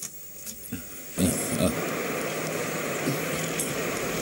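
A few faint knocks in a quiet stretch, then about a second in a sudden, steady wash of street traffic noise with a car engine running.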